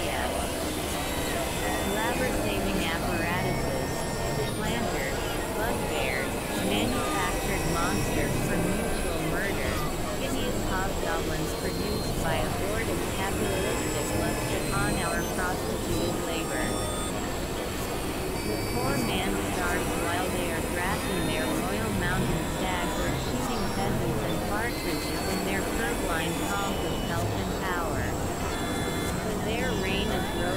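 Dense experimental electronic sound collage: layered synthesizer drones and noise with many short chirping pitch glides, at a steady level throughout, with indistinct voices buried in the mix.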